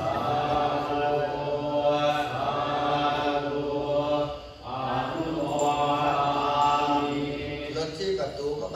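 A group of Buddhist monks chanting together in a steady, held recitation, with a short breath pause about four and a half seconds in before the chant resumes.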